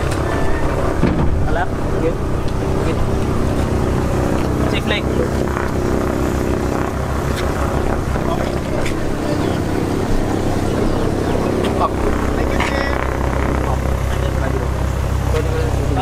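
A light aircraft's piston engine and propeller running at a steady drone. It eases a little in the middle and grows stronger again about twelve seconds in.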